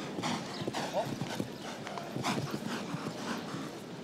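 Show-jumping horse cantering on grass turf, its hoofbeats and strides coming in a steady rhythm of about two a second.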